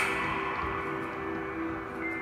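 Ambient music of sustained, bell-like ringing tones like a gong or singing bowl, with a brief click right at the start.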